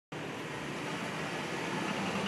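Steady background noise of street traffic, an even hiss and rumble with no distinct events.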